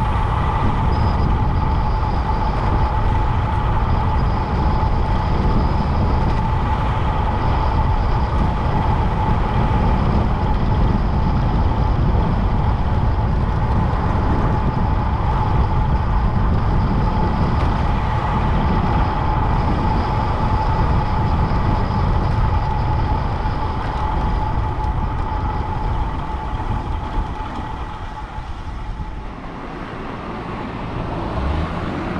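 Wind rushing over the microphone of a bicycle-mounted camera, with tyre noise on a concrete road and a steady high hum, while a bicycle rolls along at speed. It grows quieter over the last few seconds.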